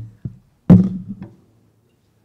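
Microphone handling noise as a speaker adjusts a boom-arm microphone on its stand: a few knocks and thunks picked up by the mic, the loudest a little under a second in, with a short ring after it.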